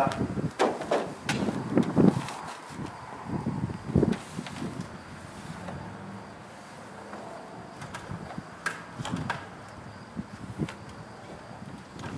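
Work noise from cleaning a garage door frame: a few irregular knocks and thuds in the first four seconds as the ladder is climbed, then faint rubbing of a rag wiping the frame, with occasional light clicks.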